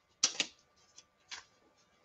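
Short crisp clicks and rustles of a comic book being handled: a loud double snap about a quarter second in, then a faint tick and one more rustle around a second later.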